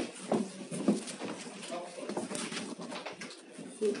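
Indistinct, quieter talking from people in a small room, picked up by a handheld phone.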